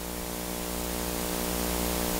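Steady hiss with a low electrical hum, slowly getting a little louder: the background noise of the recording.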